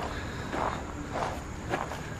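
Footsteps of a person walking at an easy pace: three soft steps about half a second apart.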